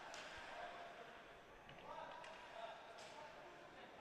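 Near silence: faint, steady background noise with a few faint, brief tones around the middle.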